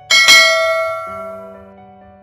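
Bell chime sound effect of a subscribe-animation notification bell, struck twice in quick succession just after the start, then ringing and fading away over about a second and a half.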